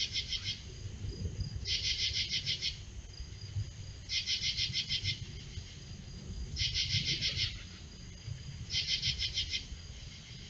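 Night insects calling in a repeating chorus: about one-second bursts of rapid high-pitched pulses come roughly every two seconds, over a faint steady high trill and a low background rumble.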